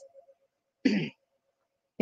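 A woman clears her throat once, a short rasp about a second in.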